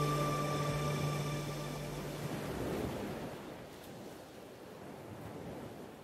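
The last chord of a classical guitar rings out and fades, its low note dying away about two seconds in. A soft hiss is left that keeps fading.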